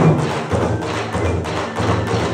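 Wadaiko ensemble playing: chu-daiko drums on slanted stands struck with bachi, in a run of deep, resonant strokes.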